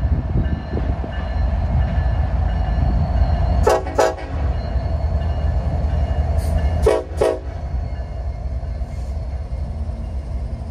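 Diesel freight train passing close by with a steady low rumble of engines and wheels on rail. The locomotive's air horn sounds two short blasts about four seconds in and two more about three seconds later.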